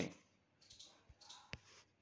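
Near silence broken by a single sharp click about one and a half seconds in, with a fainter click shortly before it.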